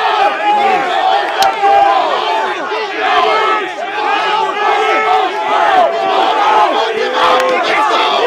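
A crowd of football players yelling and hollering at once, many overlapping voices with no break, cheering on teammates in a one-on-one drill.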